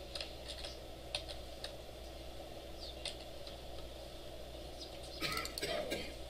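Typing on a computer keyboard: a few scattered keystrokes, then a quick run of keys near the end, over a faint steady hum.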